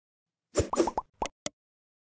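A quick run of about six bubbly pop sound effects over one second, several of them with a short upward glide in pitch. They go with motion-graphics icons popping onto the screen.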